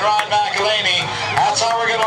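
Race announcer talking over the public-address system.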